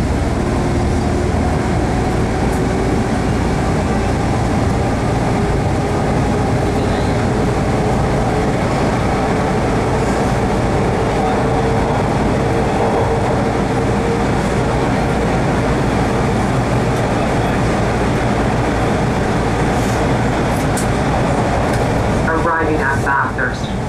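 Bombardier T1 subway train running through a tunnel, heard from inside the car: a steady loud rumble of wheels on track, with a faint motor whine that rises slowly in pitch over the first half.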